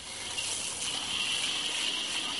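Aerosol can of oven cleaner spraying with a steady hiss.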